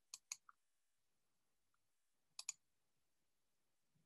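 Computer mouse clicked in two quick pairs, one at the start and another about two and a half seconds in, with near silence between.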